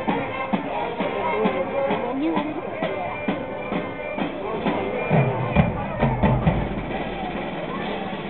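High school marching band playing on the field, with people talking nearby in the crowd.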